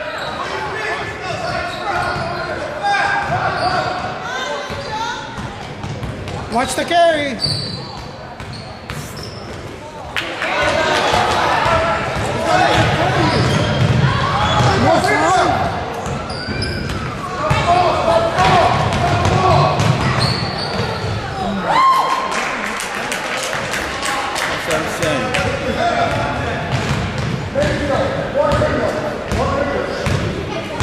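Basketball bouncing on a hardwood gym floor during play, with spectators shouting indistinctly in a large gym. The shouting grows louder from about ten seconds in and stays up for several seconds.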